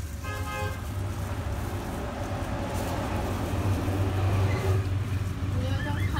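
Street traffic: a motor vehicle engine rumbling steadily and growing louder about four seconds in as it passes close by. A short horn toot sounds near the start.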